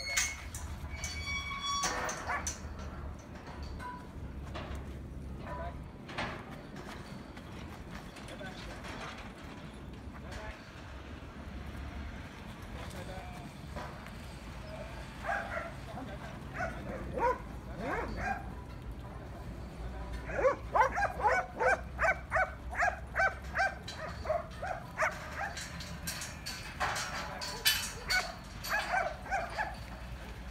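A working sheepdog barking at sheep in the yards: scattered calls first, then a quick run of about a dozen barks, close to three a second, about two-thirds of the way in, and more barks near the end.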